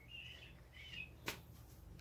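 Faint, short, bird-like chirps in the first second, then a single light tap about a second in as a tarot card is set down on the table.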